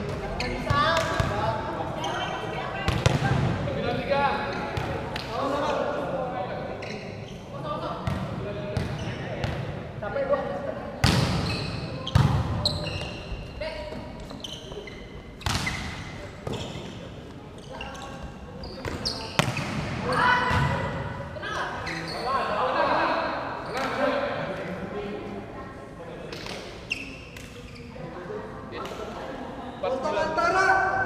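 Volleyball rallies: a dozen or so sharp slaps of the ball being hit by hands and arms and landing on the court, irregularly spaced and echoing in a large indoor hall. Players' voices call out between the hits.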